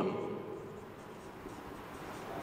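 Marker pen writing on a whiteboard: a faint, soft scratching as a word is written out letter by letter.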